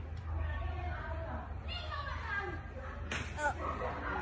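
Voices talking in the background with a higher, child-like pitch, and a single sharp click about three seconds in.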